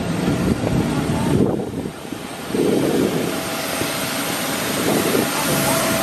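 Steady jet airliner noise on an airport apron: a broad rush with a thin high whine running through it. A person laughs about two seconds in.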